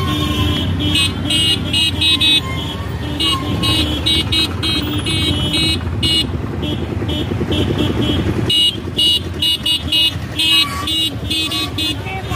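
Motorcycles running together in a road procession, with many short horn toots sounding over and over. The low engine rumble thins out about eight and a half seconds in.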